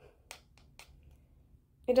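A few faint clicks of a metal spoon against a plastic pudding cup as a spoonful is scooped out, in the first second.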